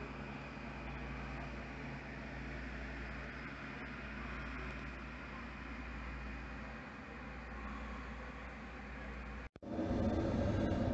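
Steady low hum and hiss of background noise with no distinct events. It cuts out for an instant near the end and gives way to a louder, different background.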